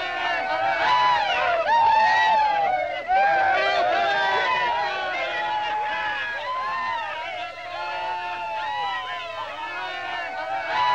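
A group of men shouting and cheering together, many voices overlapping at once.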